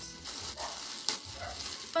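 Crinkling and crackling of a clear plastic bag being handled and pulled open, with one sharper crackle about a second in.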